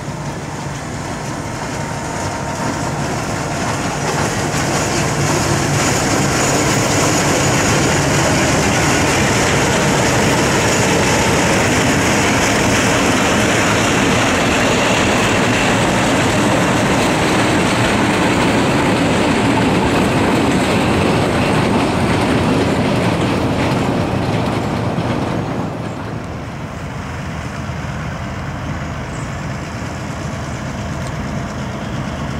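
A pair of diesel switcher locomotives running past close by, engines working and wheels rolling on the rails. The sound grows over the first few seconds, stays loud through the middle, and drops away about 25 seconds in as the locomotives move off.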